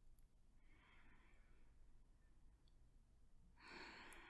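Near silence, with a woman's soft, breathy sigh about a second in and a faint breath drawn near the end.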